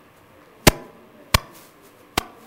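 Two sharp, loud knocks about two-thirds of a second apart.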